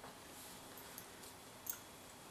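Quiet room tone with two faint ticks, one about a second in and a sharper, louder one near the end.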